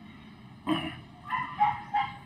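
A short cry about two-thirds of a second in, followed by a few brief high-pitched whines, from an animal.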